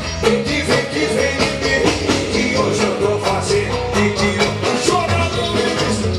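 Live forró band music played loud through a trio elétrico's sound system, with a steady fast beat, percussion and a singer.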